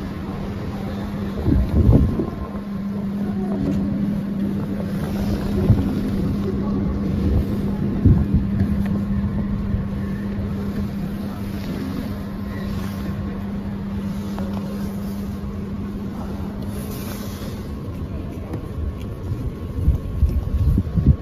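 A steady low mechanical hum with one constant tone, broken by a few short knocks about two, six and eight seconds in.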